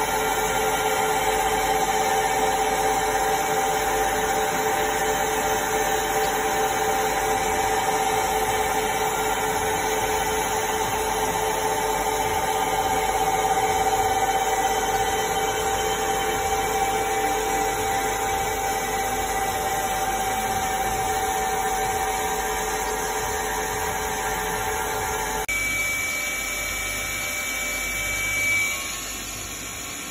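Spindle of a Daewoo DMV 4020 vertical machining centre running at a steady 3,000 rpm in its warm-up cycle, with no cutting: an even, steady whine. About 25 seconds in the sound changes, and a higher steady tone comes in for a few seconds.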